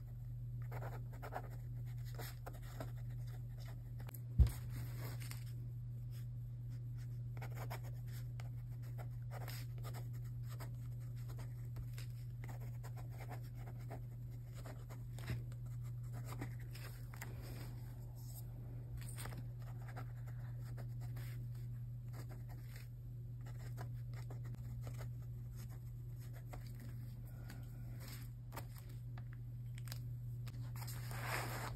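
Black pen scratching on a thin graph-paper journal page in many quick short strokes, writing cursive script, over a steady low hum. There is one sharp click about four seconds in.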